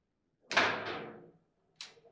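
Foosball table knocks: a loud bang with a ringing tail about half a second in, a second knock just after, and a short sharp clack near the end, from the ball and the players' rods and figures striking the table.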